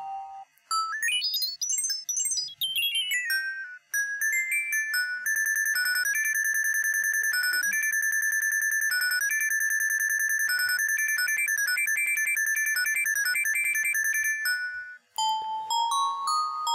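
A sliced loop of bell-like electronic tones plays back from a software sampler. Its pitch sweeps up and back down, then holds high as a fast, evenly repeating note pattern. After a brief gap near the end, it drops back to its original lower pitch.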